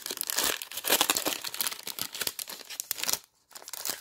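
A hockey card pack's wrapper crinkling and tearing as it is opened by hand, in a dense run of irregular crackles with a brief pause near the end.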